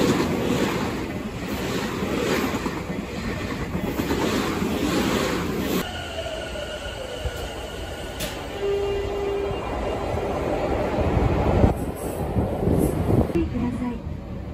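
A commuter train passing close by at speed, its wheel and rail noise loud and pulsing in a rhythm. About six seconds in the sound cuts to a quieter station passage with steady high tones and a whine falling in pitch, as of a train slowing.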